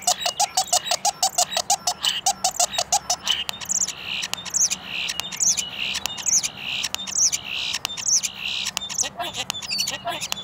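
Male European starling singing at very close range, its breeding-season song. About three seconds of fast clicking rattles over a run of short low notes, then a series of high slurred whistles, each followed by a hoarse wheeze, and clicks again near the end.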